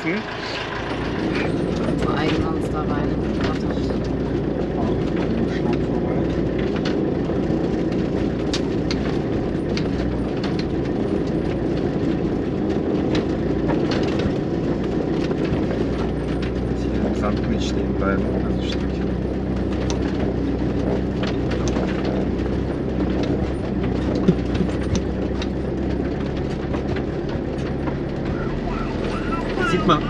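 Mercedes-Benz truck camper's engine running steadily while driving along a rough sandy track, with frequent knocks and rattles from the body over the bumps and one sharper bang about two-thirds of the way in.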